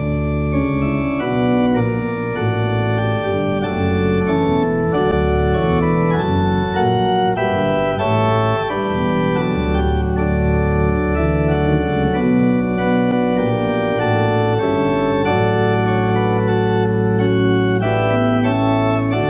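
Organ playing the prelude in sustained chords, with deep bass notes held beneath.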